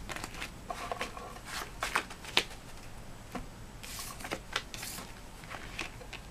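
A tarot deck being shuffled and handled by hand. Irregular sharp card snaps and flicks run throughout, with two brief brushing slides about four and five seconds in.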